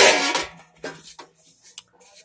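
Metal hubcaps clanking together as one is set down on the stack, a loud sudden clatter with a short metallic ring at the start, followed by a few faint taps and scrapes as the next cap is handled.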